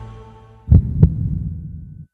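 A low soundtrack drone fading out, then a trailer-style heartbeat sound effect: two heavy, low thumps about a third of a second apart, each followed by a low rumbling decay.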